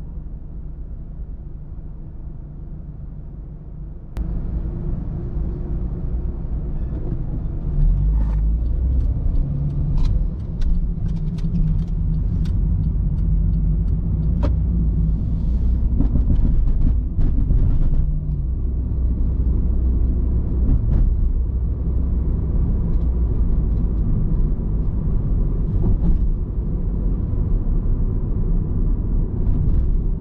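Car interior noise from a car's engine and tyres: a steady low rumble that steps up sharply about four seconds in as the car moves off from standstill and grows heavier as it gathers speed. Scattered light ticks and taps come through the middle.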